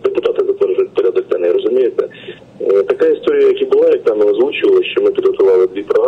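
A man speaking over a telephone line, his voice thin and cut off above the low and middle range as a phone call sounds.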